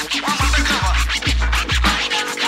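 Instrumental break of a hip hop record: deep bass drum hits that drop in pitch, under quick DJ turntable scratches.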